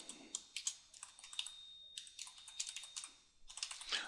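Typing on a computer keyboard: quick runs of keystrokes broken by a couple of short pauses, fairly quiet.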